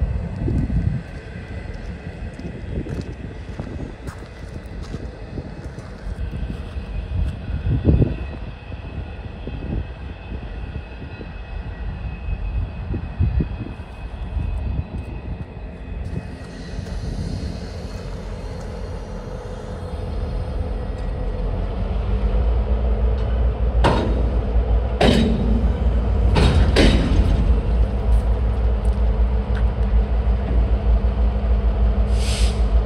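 Freight train cars rolling past, a steady rumble with scattered clicks of wheels over rail joints. In the last ten seconds a deeper, louder rumble with a steady hum builds, and a few sharp ringing clanks sound.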